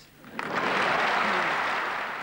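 Audience applause that breaks out about half a second in and goes on steadily.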